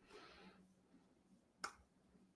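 Near silence, with a faint soft hiss in the first half second and a single short, sharp click near the end.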